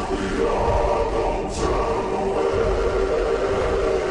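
Choral music with a choir holding long sustained notes, and a brief high hiss about one and a half seconds in.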